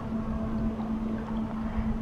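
Low steady drone of a loaded thousand-foot Great Lakes ore freighter's diesel engines under way, one constant hum over a low rumble of wind on the microphone.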